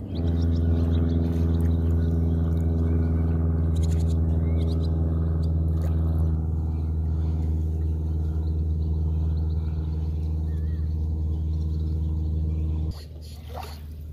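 A steady, low-pitched motor hum at constant pitch that cuts off suddenly near the end, followed by a few faint bird chirps.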